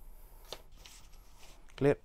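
Faint rustling of paper notes being handled, with a single light click about half a second in, then a short spoken word near the end.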